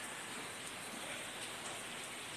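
Faint, steady, even hiss of background noise with no distinct events.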